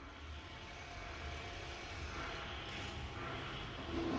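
Rumbling noise of an underground metro tunnel, a steady rumble that grows slowly louder.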